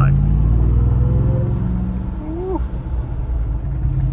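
Ram TRX's supercharged 6.2-litre V8 heard from inside the cabin as a deep drone under hard acceleration, easing off and dropping in level a little past halfway as the truck is braked hard.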